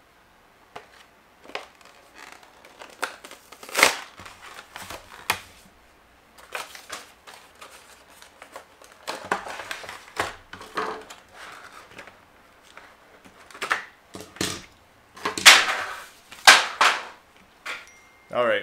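A Hot Wheels blister pack being opened by hand: the clear plastic bubble and cardboard backing card crinkling, crackling and tearing in irregular bursts, loudest in a sharp rip about four seconds in and two bursts near the end.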